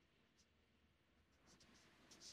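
Very faint scratching of a felt-tip marker writing on paper: a short stroke about half a second in and a few more strokes near the end.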